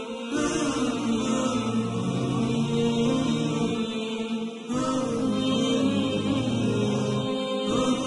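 Background music of slow chanted vocals with long held notes, the sound dipping briefly and resuming just before the five-second mark.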